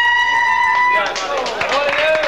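Breton clarinet (treujenn gaol) holding a long high final note that cuts off about a second in. The table then breaks into loud voices and clapping.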